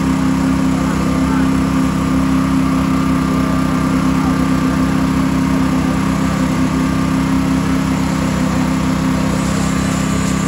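An engine running steadily at one constant speed, a continuous low drone from the machinery driving a concrete pour into canal formwork.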